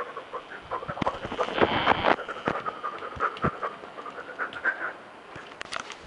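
A dog panting close to the microphone, with scattered clicks and rustles of handling.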